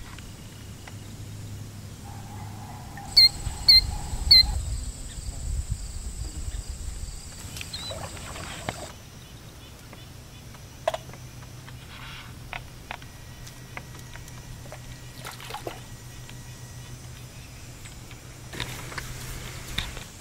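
Quiet outdoor ambience on a river, with scattered small knocks and clicks and a quick run of four short high chirps about three seconds in.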